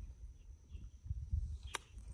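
An iron striking a golf ball on a short chip shot: one crisp click near the end, over a low background rumble.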